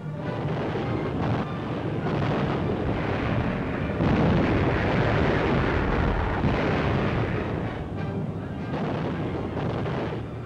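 Newsreel sound effects of aerial bombs exploding on the ground: a continuous, dense rumble of blasts that builds, is loudest through the middle and eases near the end, over a background music bed.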